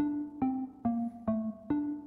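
Software xylophone preset in LMMS playing a melody at 140 BPM: about five evenly spaced notes, one per beat, each a short struck tone that fades quickly, stepping between a few pitches.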